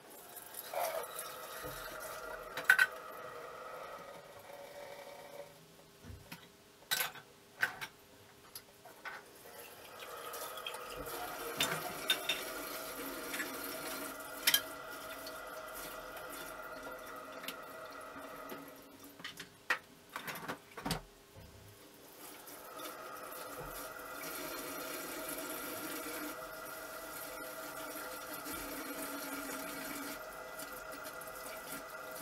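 Kitchen tap running into the sink in three long stretches while dishes are rinsed. Short clinks and knocks of dishes and pots being handled and stacked into a dishwasher rack come in between and over the running water.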